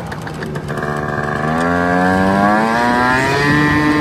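Moped engine pulling away and accelerating: its pitch holds low for about a second, climbs steadily, then steps up higher near the end.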